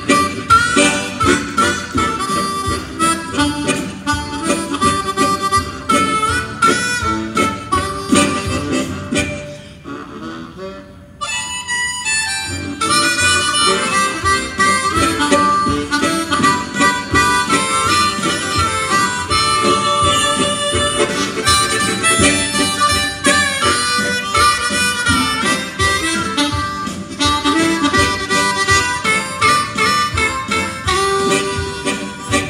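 A harmonica ensemble of diatonic, chord and bass harmonicas plays a gospel-quartet-style instrumental over a backing track, with a lead harmonica on the melody. About ten seconds in the music drops back quietly for a moment, then the full ensemble comes back in louder.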